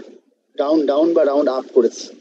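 A man's voice speaking, from about half a second in until near the end.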